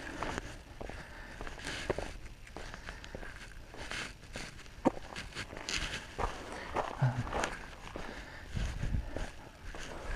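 Footsteps of a person walking on an asphalt path, irregular scuffing steps with one sharp click about halfway through and a low rumble near the end.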